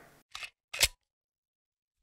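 Two short, sharp swish-like sound effects about half a second apart, from an edited intro transition, followed by about a second of dead silence.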